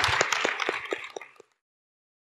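Audience applauding, many hand claps at once, fading away about a second and a half in.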